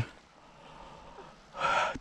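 A short quiet stretch, then a man's sharp breathy gasp of excitement about one and a half seconds in.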